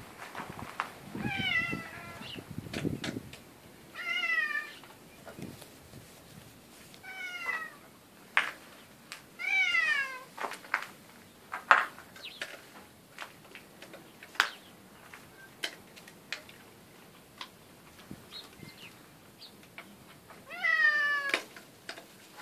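Domestic tabby cat meowing five times, each a drawn-out call of about a second that falls in pitch, spaced a few seconds apart with a long gap before the last. Between the meows come scattered sharp clicks and crunches from a small dog eating food from its bowl.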